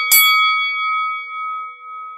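A bell-like ding sound effect, struck again just after the start and left ringing as a few steady clear tones that slowly fade, the highest dying out first.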